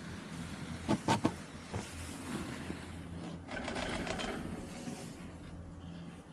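Skis on a packed snow slope: a quick run of sharp clicks about a second in, then a second or so of skis scraping over the snow as the skier sets off, over a steady low hum.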